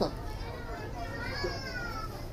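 Steady low room noise in a lull between talk, with a faint high-pitched voice in the background about a second in, its pitch sliding down.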